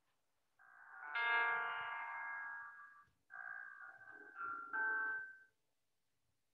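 Roland digital grand piano playing the opening of a ballad: a held chord that swells and slowly fades over about two and a half seconds, then a second short phrase of changing chords that stops about five and a half seconds in.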